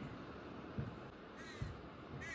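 A bird calling faintly once, about one and a half seconds in, with a few soft low thumps.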